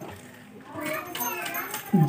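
Quiet, indistinct voices talking, starting about a second in; they sound like children's voices.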